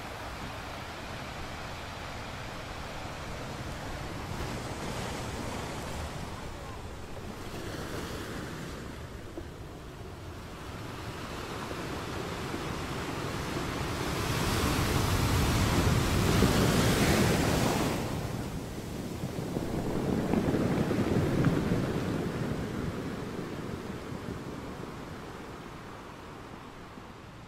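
Sea waves washing onto a beach, with wind on the microphone. The surf swells to its loudest about two-thirds of the way through, rises again shortly after, then fades near the end.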